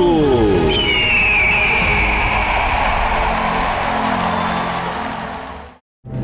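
Theme music of a TV programme's opening, ending in a long held swell with a high sliding tone that fades out, leaving a moment of silence just before the end.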